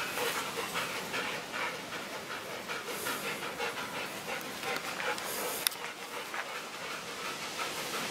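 Bouvier des Flandres dogs panting hard while they play, a steady run of quick rough breaths, with one sharp click about two-thirds of the way through.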